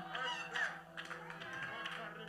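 A faint, steady low keyboard note held under the sermon, with faint scattered voices from the congregation in the room.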